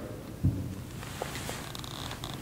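A soft, low thump about half a second in as a metal communion cup is set down on the cloth-covered table, followed by a low, steady room rumble with a few faint ticks.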